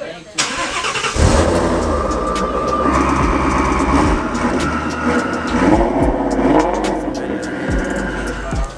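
Twin-turbo Ford Shelby GT350's sleeved, built V8 being started on the dyno: a short cranking sound, then the engine catches about a second in and runs at a loud idle with some rise and fall.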